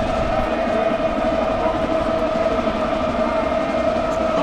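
A long, steady horn-like tone held without a break, over a noisy background.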